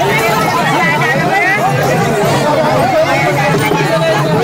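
A dense crowd of many people shouting and talking at once: a loud, steady hubbub of overlapping voices.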